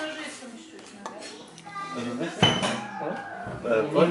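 Clinking and knocking of a ceramic wine bottle and tableware on a stone countertop as the bottle is opened, with one sharp knock about two and a half seconds in.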